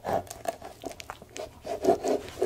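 A knife cutting through the crusty baked dough of a pizza cone, heard as a dense run of small, irregular crackles and crunches.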